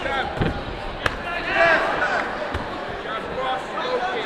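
Dull thuds of padded blows landing in a kickboxing bout, boxing gloves and shin guards striking, a few times with the sharpest about a second in, while spectators shout over the murmur of the hall.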